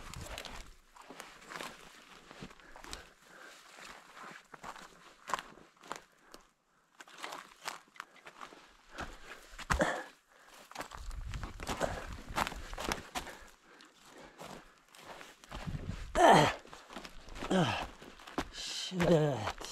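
Footsteps crunching and brushing through dead branches and forest-floor debris, with irregular snaps and rustles of twigs against the body. Near the end a loud voiced sound from the walker falls in pitch once.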